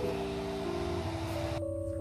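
Background music: soft held chord tones that change pitch a couple of times, over a steady hiss that cuts off suddenly near the end.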